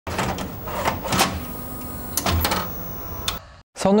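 Clicks and clunks of a VCR being worked by hand, a videotape going in, over a steady hiss and low hum; about six knocks, the last about three and a half seconds in, after which it goes quiet and a voice calls out just before the end.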